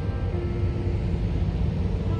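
Wind rumbling on the microphone: an uneven low rumble with no words over it, and a faint brief tone about half a second in.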